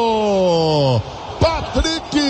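A male football commentator's drawn-out goal shout, one long held note sliding down in pitch that breaks off about a second in, followed by a few short shouted syllables.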